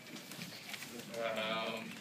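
A person's voice making a drawn-out, wavering hesitation sound, an 'um', starting about a second in.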